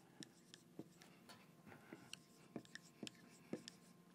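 Dry-erase marker writing on a whiteboard: a faint, irregular string of short scratching strokes.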